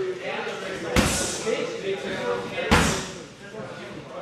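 Two hard strikes landing on handheld Thai pads, about a second and a half apart, each a sharp smack.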